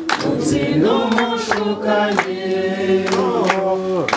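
A group of voices singing unaccompanied, with long held notes in several parts that shift pitch together every second or so. A man's voice on a microphone leads the singing.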